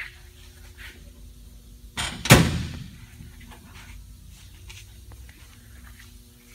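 A fiberglass roadster deck lid being shut: one loud, sharp thud about two seconds in as it closes onto its bear claw latch.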